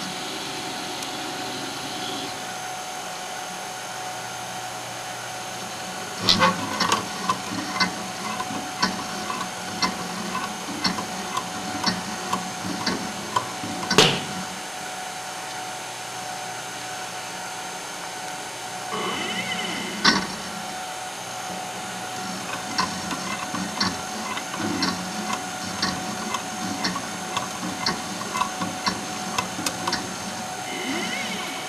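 Stator winding machine winding magnet wire onto a brushless outrunner stator: a steady hum with runs of regular mechanical clicks, about two to three a second, and one louder click about fourteen seconds in. After a pause in the clicking there is a brief high whine, then the clicking resumes.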